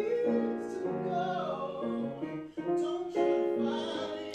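Live acoustic performance: a male singer's voice over piano accompaniment, with held piano chords under the vocal line.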